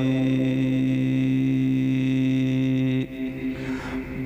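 A man's chanting voice through a microphone and loudspeakers, holding one long, steady note at the end of a line of Arabic devotional poetry and cutting off about three seconds in.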